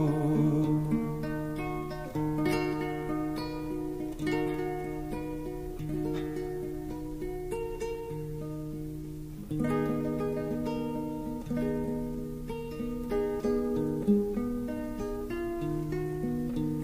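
Instrumental passage of a recorded song: acoustic guitar picking a melody of ringing notes over held low notes, with no singing.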